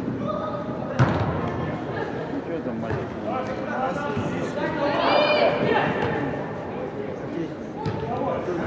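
A football is kicked once, about a second in, a sharp thud that echoes around a large indoor hall. Distant shouts and calls from players and coaches run underneath, with one high-pitched shout around five seconds in.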